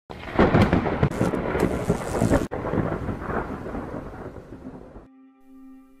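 Thunder rumbling with a rain-like hiss, cut off sharply about two and a half seconds in, then a second, weaker rumble that fades away. Near the end a steady low held tone begins.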